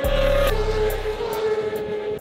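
Race motorcycles passing close by at speed, the engine note dropping in pitch as they go past about half a second in, over background music with a low bass.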